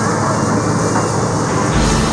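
Steady vehicle and street noise, with a deeper engine rumble coming in near the end.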